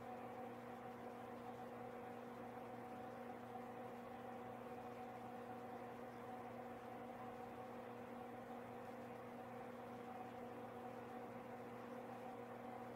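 Quiet room tone: a steady low electrical hum with faint hiss and no distinct sound events.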